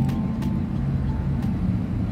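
Steady low vehicle rumble, with a few faint clicks.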